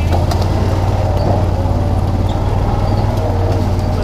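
John Deere Gator utility vehicle's engine running steadily with a low drone as it drives along, heard from on board.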